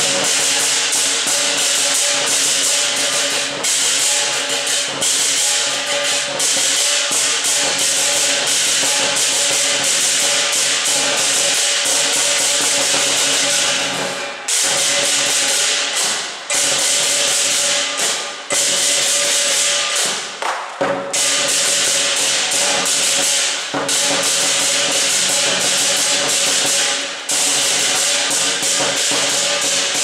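Lion dance percussion: a large Chinese lion dance drum beaten in a rapid, driving rhythm with clashing cymbals, loud and continuous, breaking off briefly a few times in the second half.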